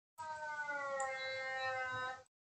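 A cat's long drawn-out meow, slowly falling in pitch, about two seconds long, starting and cutting off abruptly.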